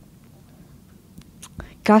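A quiet pause with faint room tone and a few faint clicks. A woman's voice says "gosh" near the end.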